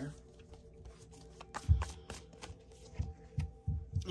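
Tarot/oracle card deck being shuffled and handled by hand: a run of soft card flicks and taps, with a few dull thumps in the second half as the deck is handled and a card is pulled.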